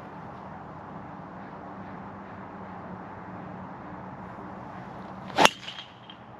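A golf club striking a ball once: a single sharp, loud crack about five and a half seconds in, over a steady outdoor background hum.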